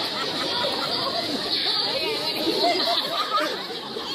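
Indistinct chatter of several people talking over one another in the street, with no single voice standing out.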